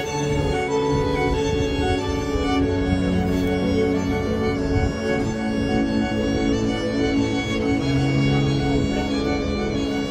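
A violin and a cello playing together in a bowed duet, the cello holding long low notes beneath the violin's melody.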